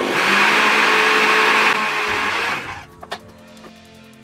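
Countertop blender running at full speed, grinding sacha inchi nuts in water into nut milk, then cutting off a little under three seconds in. A sharp click follows, then faint background music.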